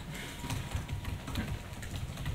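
Computer keyboard typing: a run of quick, light key clicks, faint under the room's background.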